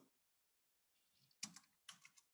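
Near silence with a few faint computer keyboard keystrokes in the second half.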